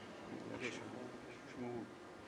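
Faint off-microphone voices murmuring in a large hall over a low steady hum.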